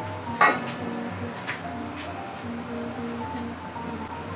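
A spatula knocking against a stainless steel mixing bowl while scraping out a creamy filling: one loud metallic clank about half a second in, then a couple of lighter taps. Background music plays throughout.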